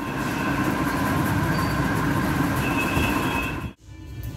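Steady, loud rushing noise with a faint steady whine in it, like a machine or blower running; it cuts off suddenly just before the end.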